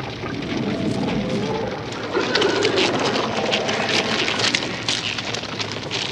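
Noisy, crackling and hissing sound-effect intro, with faint shifting low tones under it, opening a death metal album track before the band comes in.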